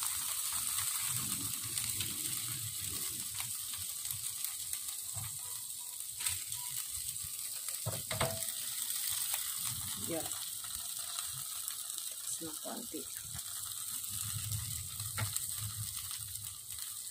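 Marinated meat chops sizzling on an electric grill: a steady high hiss, broken by a few sharp clicks.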